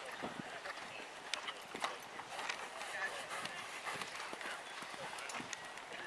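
Hoofbeats of a cantering horse on sand arena footing, irregular sharp thuds, with faint voices in the background.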